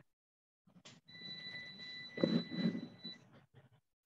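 A faint, steady, high-pitched electronic whine over a low hiss. It starts about a second in and stops after about two seconds, with a faint, indistinct voice partway through.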